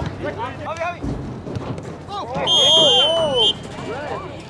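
A referee's whistle, one loud steady blast of about a second past the middle, over players and spectators shouting.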